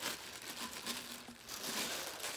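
Thin clear plastic bag crinkling and rustling as it is pulled off a protein skimmer's collection cup. The crackling gets louder in the second half.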